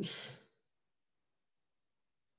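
A woman's voice trailing off at the end of a spoken word into a breathy exhale, fading out within the first half second, then silence.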